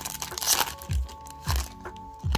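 Foil wrapper of a Topps baseball card pack crinkling as it is torn open and the cards are slid out, over background music with a steady bass beat about once a second.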